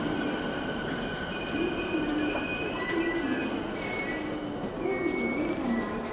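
Toei 10-300 series subway train braking into a station, heard from inside the car. Its Mitsubishi IGBT VVVF inverter gives a wavering low electric tone, and short high-pitched squeals come and go from the wheels.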